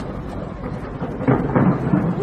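Skyscraper fireworks display bursting and crackling high overhead, heard as a thunder-like rumble with scattered sharp cracks and a louder cluster of bursts about a second and a half in.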